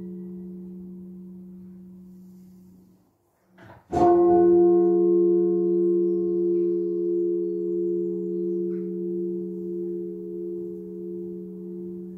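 A 13-hundredweight church bell cast by Evans of Chepstow in 1649, the 6th of a ring of eight, tolled half-muffled with a leather pad strapped to one side. The hum of the previous stroke dies away over the first three seconds. After a moment's near silence, a single clear stroke about four seconds in rings on with a slow waver.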